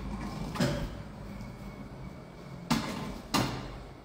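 A weight plate being loaded onto the sleeve of a plate-loaded gym machine: a knock about half a second in, then two sharp knocks near the end as the plate goes on.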